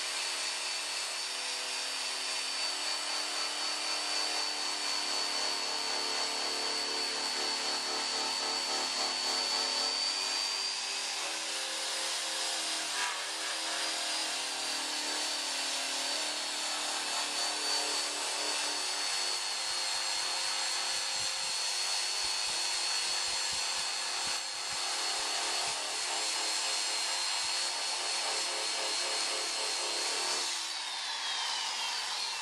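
Hand-held power tool spinning a paint-stripping wheel (wheel brush) against a steel trunk lid, grinding old paint and primer off to bare metal. It gives a steady high-pitched whine over the rasp of the wheel scrubbing the panel, varying slightly as it is pressed and moved.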